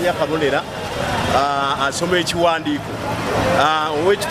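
A man speaking on camera, over the steady noise of street traffic.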